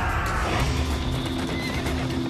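Horses galloping, with a horse's whinny falling in pitch and fading in the first half second, over background music with held low notes.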